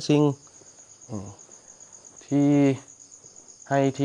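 Crickets chirring steadily in a high, fast-pulsing trill, with short phrases of a man's speech over it.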